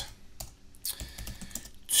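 Computer keyboard being typed on: a few separate keystrokes.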